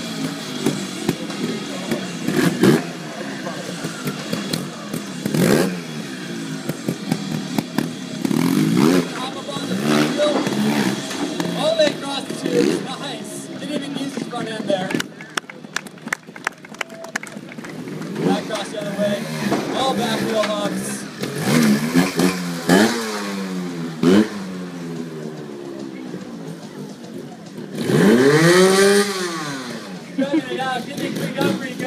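Trials motorcycle engine blipped and revved again and again, each rev rising and falling in pitch, with scattered sharp knocks. One long rev rises and falls near the end.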